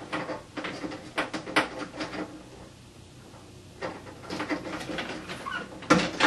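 Handling noise from a small cooling fan and its wire-lead connectors being pushed back together: a run of small clicks and rustles, a pause of about a second and a half, then more clicks and rustles.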